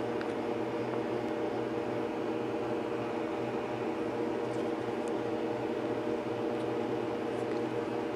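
Steady mechanical room hum with a few fixed tones, unchanging throughout, and a faint click at the very start.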